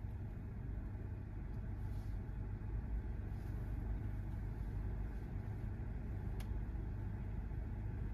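Car engine idling steadily in park, a low rumble heard from inside the cabin, with one faint click about six seconds in.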